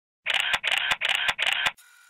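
A single-lens reflex camera shutter firing four times in quick succession, about three shots a second. Each shot is a short mechanical burst ending in a sharp click. The shots stop about three-quarters of the way through, leaving only a faint steady hum.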